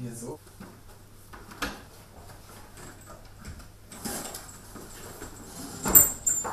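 Handling noises in a small room: scattered clicks and knocks, then a rustling from about four seconds in, over a faint steady low hum. A sharp click comes near the end.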